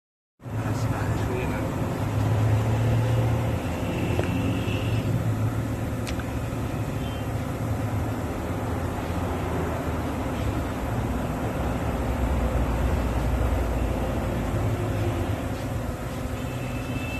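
Steady low rumble of road vehicle noise, continuous with no distinct events.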